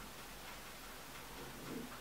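Quiet room tone: a faint, steady hiss with a low hum, and no clear sound from the fingers pressing the paper onto the knob.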